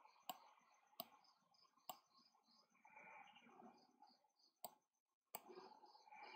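Computer mouse button clicks, five faint sharp clicks at irregular intervals over otherwise near silence.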